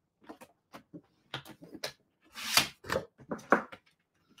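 Cardstock being scored and handled on a paper trimmer. Light taps and clicks lead to a short scraping slide just past halfway, typical of the scoring blade drawn along its track. A cluster of knocks follows as the trimmer is moved aside.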